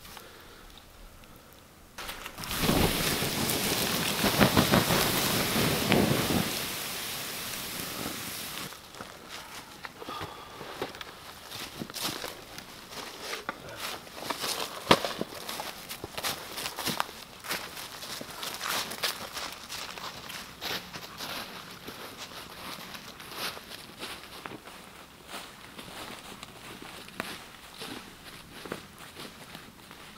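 Water dumped onto a campfire's hot coals, hissing loudly for about six seconds starting two seconds in as the fire is put out. Then footsteps crunching through dry leaves.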